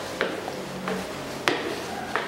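Footsteps going up a stairway with grit and debris on the treads: a few sharp taps and scuffs, the clearest about one and a half seconds in.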